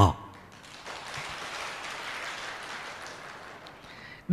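Audience applauding: a spread of hand-claps that swells about a second in, holds, and dies away near the end.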